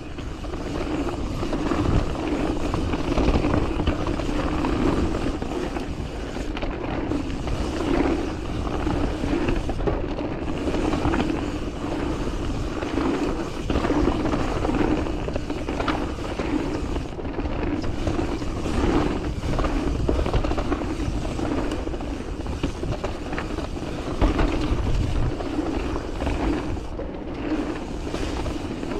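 Mountain bike descending a dirt forest singletrack at speed: steady wind rumble on the microphone and tyre roar, with frequent rattles and knocks as the bike goes over roots and bumps.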